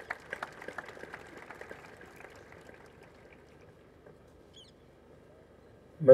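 Faint scattered clapping from an audience, thinning out and dying away over the first two or three seconds. A brief high chirp comes about four and a half seconds in.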